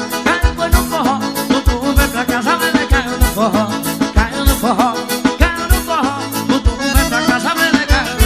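Forró band music led by accordion over a steady bass-drum beat.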